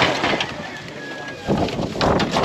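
Rusty corrugated metal roofing sheets and wooden planks being shifted by hand, rattling and scraping, with a sudden loud clatter at the start and another about a second and a half in.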